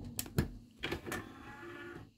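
A few sharp clicks, then a DVD player's disc tray motor whirring steadily for about a second as the tray slides open, stopping abruptly near the end.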